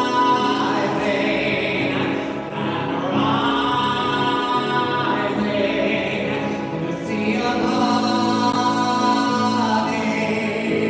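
A singer holding long sung notes over violin accompaniment, amplified through stage speakers, in three sustained phrases with brief breaths between.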